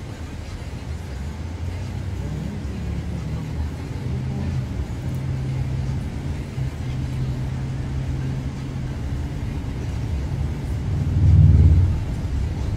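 Steady low rumble of a car heard from inside the cabin, with a faint steady hum in the middle. Near the end comes a louder, short low sound from a man yawning wide.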